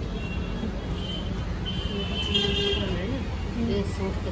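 Busy market street ambience: a steady low rumble of traffic with background voices, and a brief high-pitched tone about one second in and again around two seconds in, like a vehicle horn.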